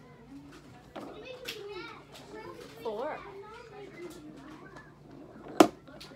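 A young child's voice making wordless sounds, wavering up and down in pitch, with a single sharp knock about five and a half seconds in, the loudest sound.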